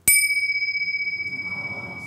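A pair of tingsha cymbals struck together once: a sharp clink followed by a long, clear ring at one steady pitch that fades slowly. The strike marks one of the invocations in a spoken ritual.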